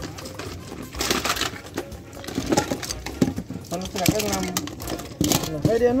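Plastic toys clattering and knocking against each other as hands rummage through a plastic crate of toys, with voices talking in the background.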